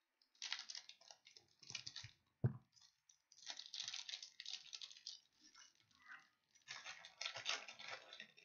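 Foil wrapper of a 2020 Bowman baseball card pack crinkling and tearing open in the hands, in three spells of crackle. There is a single sharp knock about two and a half seconds in.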